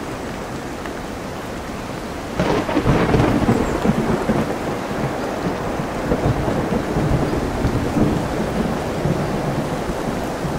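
Steady rain with a storm-wave noise bed. A sudden loud peal of thunder breaks in about two and a half seconds in and rolls on for several seconds.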